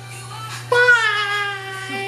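A high-pitched voice singing or calling out one long drawn-out note that starts about a third of the way in and slowly slides down in pitch, over a steady low hum.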